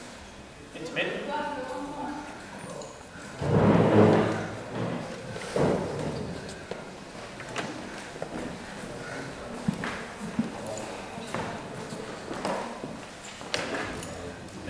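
Indistinct voices in a large, echoing hall, with a louder burst about three and a half seconds in and scattered light knocks and thuds.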